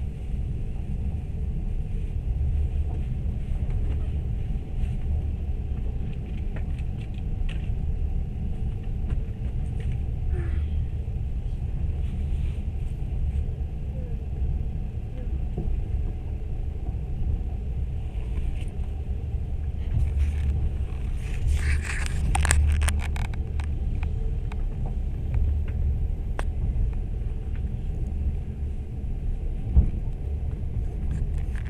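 Steady low rumble of a moving train heard from inside the carriage, with a short spell of sharp rattling clicks about two-thirds of the way through.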